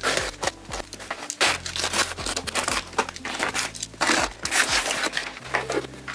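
A taped cardboard shipping box being opened by hand: irregular crackling, tearing and rustling of packing tape, cardboard flaps and the packaging inside.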